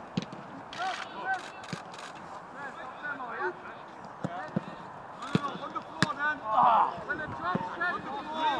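Footballs being kicked with sharp thuds several times, the loudest about six seconds in, among players' voices calling out across a grass training pitch.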